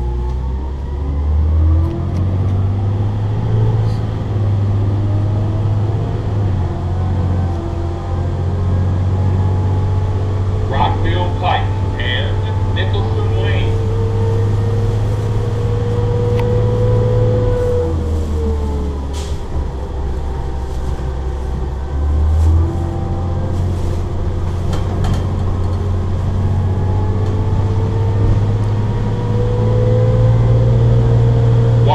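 Interior sound of a New Flyer C40LF natural-gas city bus under way: a steady engine drone with a slowly rising and falling whine from the drivetrain as it pulls along. The drone drops about eighteen seconds in, as the bus eases off, and picks up again a few seconds later as it accelerates, with small rattles and clicks from the cabin throughout.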